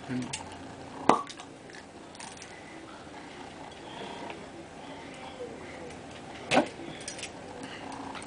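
Metal wing corkscrew being handled and twisted on a wine bottle: faint fumbling, a sharp click about a second in, and a louder short knock near seven seconds.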